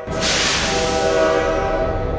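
Diesel locomotive air horn sounding, a steady chord of tones that starts suddenly with a hiss that fades away over the next two seconds.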